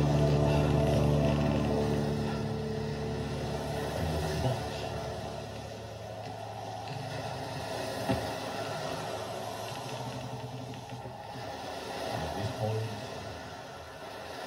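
A metal band's final held chord rings out from a TV's speakers and fades away over the first few seconds, leaving low room noise with a single sharp knock about eight seconds in.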